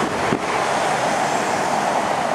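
Steady road traffic noise: a car passing close by on a cobbled street, a continuous wash of tyre and engine sound.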